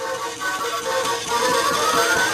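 Electronic tune from a toy claw machine's built-in speaker, playing at its normal pace while the game runs: it has not yet sped up, as it does when time is running out. A tone rises in pitch through the second half.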